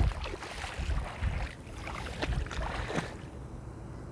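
Wind rumbling on the microphone, with faint splashing of shallow sea water.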